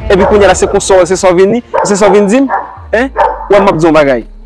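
Speech only: two people talking in a conversation, a man and then a woman.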